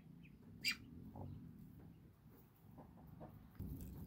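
Faint, short high peeps from a day-old hybrid duckling, with one louder, sharp sound less than a second in.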